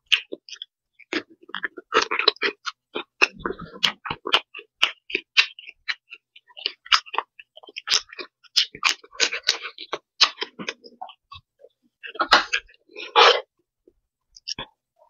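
A person chewing and smacking her lips close to the microphone while eating shrimp: an irregular run of wet mouth clicks and short crunchy bursts, with a denser, louder stretch near the end.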